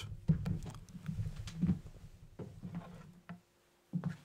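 Handling noise: a run of small knocks, clicks and rustles over about three seconds, then a short lull and one more knock near the end, as audio equipment and its cables are unplugged and moved.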